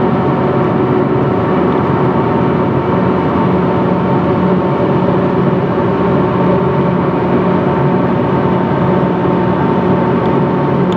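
Inside a car cruising at highway speed: a steady drone of road and engine noise, with a low hum that grows stronger about three seconds in.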